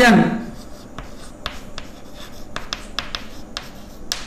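Chalk writing on a blackboard: a run of short, sharp taps and scratches as a word is written out stroke by stroke.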